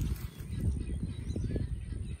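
Outdoor background noise: a low, steady rumble with a few faint bird chirps.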